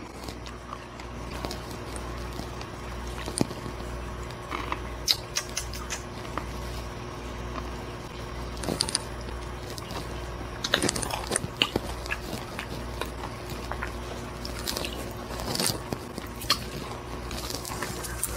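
Someone chewing a dried, crunchy scorpion with the mouth, making scattered small crunches and clicks at irregular intervals over a steady low hum.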